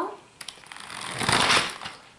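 A click, then a small toy car's two battery-powered electric motors spinning its plastic wheels up with a rattling whir for about a second and a half, loudest near the middle, as the car lurches off under full power of both motors.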